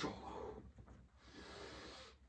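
A man breathing hard through his mouth while pressing dumbbells on a bench: two long, hissing breaths, one fading just after the start and one near the end.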